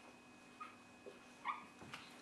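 Whiteboard marker squeaking faintly against the whiteboard as a vector is written: three short squeaks about half a second apart.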